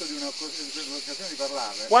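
Steady high-pitched buzzing of cicadas in summer heat, with a man's voice murmuring quietly underneath between phrases.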